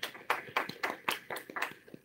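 Short, scattered applause: a few people clapping, the claps coming quickly and unevenly, about six a second, and dying out near the end.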